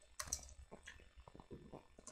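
Faint clicking of a computer keyboard being typed on: a scattering of soft keystrokes at an uneven pace.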